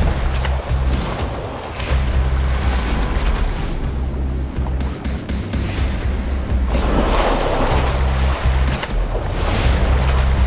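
Dramatic score with steady low bass notes over heavy splashing and churning water as two saltwater crocodiles thrash in a fight, the splashing loudest about seven seconds in.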